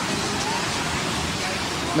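Steady rushing hiss of breaking ocean surf, an even wash of noise with no distinct events.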